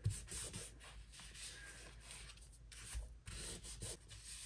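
Faint rubbing and rustling of a paper beverage napkin being folded and pressed flat into triangles by hand, with a couple of soft bumps of the hands on the counter.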